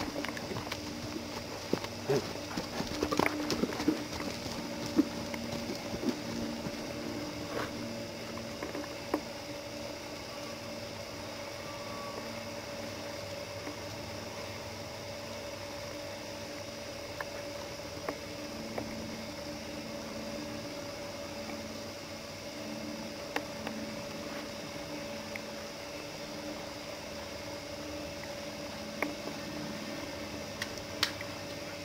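Hoofbeats of a young Quarter Horse on the dirt of a round pen, a run of thuds in the first few seconds as it comes down from its canter, then only the odd single knock over a faint steady hum.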